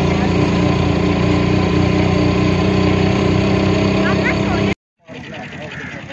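Engine of an open-sided vehicle running steadily, heard from on board as it drives. It cuts off abruptly near the end, giving way to quieter outdoor sound with voices.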